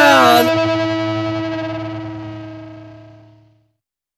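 Final chord of a punk rock song on distorted electric guitar, wavering in pitch at first, then held and fading away over about three seconds until it dies out.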